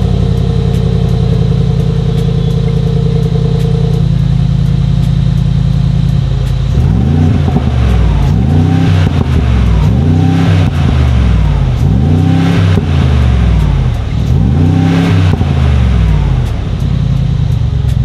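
Mercedes-AMG G63's 4.0-litre twin-turbo V8 idling steadily, then blipped five times from about seven seconds in, each rev rising and falling back to idle.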